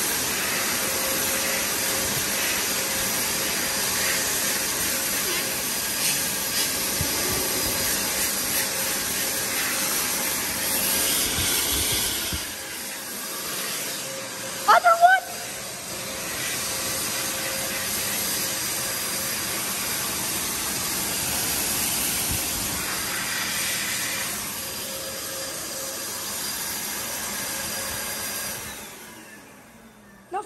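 Bradley Advocate sink-integrated hand dryer blowing a steady rush of air. The rush dips for a few seconds about twelve seconds in, runs steadily again, then fades out near the end.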